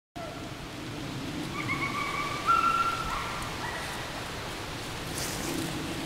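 Clear whistled notes, a few held tones stepping up and down in pitch for about two seconds, over a steady background hiss.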